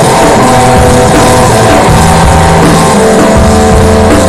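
Loud live stoner/psychedelic rock: an electric guitar through an amplifier holding long, sustained notes over a drum kit, changing notes about two seconds in and again about three seconds in.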